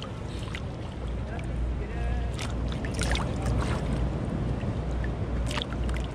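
Shallow seawater splashing as a toddler slaps and flicks it with her hands and a plastic toy rake, several short splashes over a steady low rumble.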